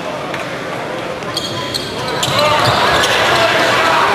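Live basketball game sound in an arena: a basketball bouncing on the hardwood court amid crowd noise, which grows louder about two seconds in as play resumes.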